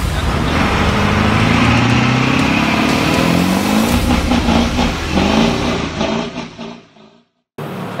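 A vehicle engine revving, its pitch climbing over the first few seconds, then fading away into a moment of silence near the end.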